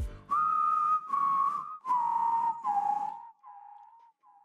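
A short whistled outro sting: four held notes, each a little lower than the one before, trailing off in fading echoes near the end.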